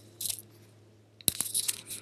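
Crisp rustling and crackling of tarot cards being handled, in two short spells; the second, louder spell starts with a sharp tap a little past halfway.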